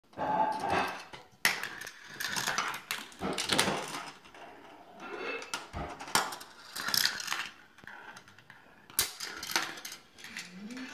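Marbles running through a Gravitrax plastic marble run: rolling rattles along the rails and curved tracks, broken by sharp clicks and clacks as balls drop and strike the pieces.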